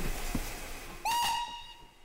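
Steam locomotive whistle giving one short, steady blast about a second in, sounded as the train is given the green flag to depart.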